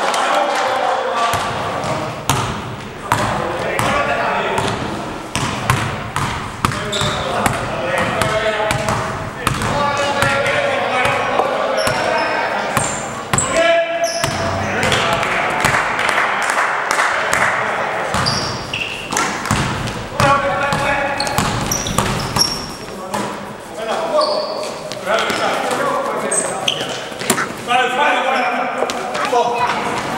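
Basketball game in a sports hall: the ball bouncing on the floor, sneakers squeaking and players calling out, all echoing in the hall.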